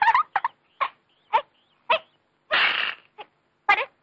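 A person making short, high, animal-like cries, about one every half-second, in mock imitation of an animal, with a longer breathy hiss about two and a half seconds in.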